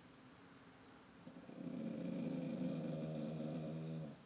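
Dog giving a low, steady growl that starts just over a second in, holds for nearly three seconds and stops sharply: an alarm growl at an intruder outside.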